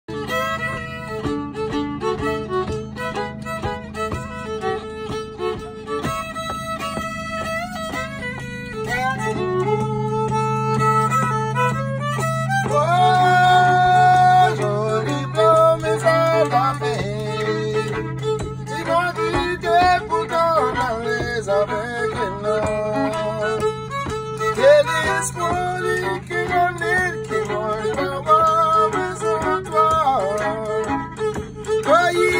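Fiddle playing a melody with slides and bends over a steady low drone held throughout, swelling louder around the middle.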